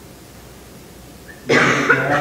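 Quiet room tone, then about a second and a half in a single loud cough.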